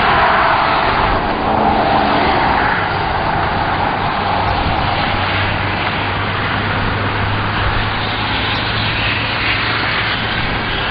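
Street traffic noise: a car passes, loudest in the first few seconds, then a steady low hum of traffic.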